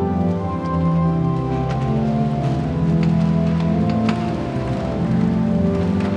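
Church organ playing slow, held chords in a large reverberant church, with a few soft clicks.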